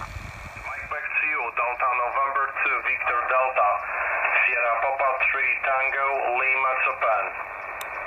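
Single-sideband voice from a Yaesu FT-817 shortwave transceiver's speaker: a distant station talking on the 20 m band, thin and narrow-sounding with receiver hiss behind it. The voice stops about seven seconds in, leaving steady hiss.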